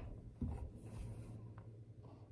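Bare footsteps thudding softly on a floor close to the microphone as someone walks past, over a steady low hum, with light rubbing and a small click about one and a half seconds in.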